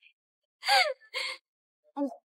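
A person's short, breathy vocal sounds, like a gasp: two quick ones about half a second and a second in, the first falling in pitch, then a brief one at the end.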